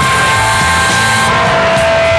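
Loud live punk rock band playing: electric guitar holding sustained notes over drums, with no vocal line.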